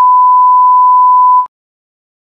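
A colour-bars test tone: one steady, pure beep held at a single pitch, which cuts off suddenly about one and a half seconds in.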